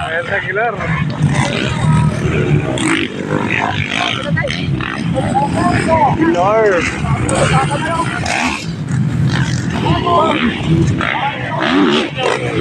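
Motocross dirt bike engines running and revving around the track, with a race announcer's voice talking over them.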